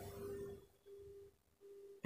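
Near silence with a faint steady hum-like tone that cuts out briefly three times.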